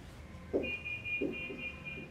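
Marker writing on a whiteboard: a few short strokes, with a thin, high, steady squeak starting about half a second in.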